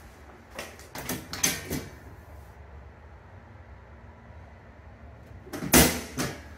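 A hand knocking on the sheet-metal door of a breaker panel: a few light clicks and knocks in the first two seconds, then one loud sharp bang near the end.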